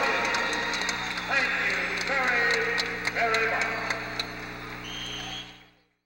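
Indistinct voices with music behind them, over a steady electrical hum and frequent crackling clicks, all fading out near the end.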